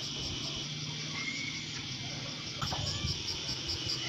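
Insects chirping outdoors in a steady, rapidly pulsing chorus, with a faint low hum underneath.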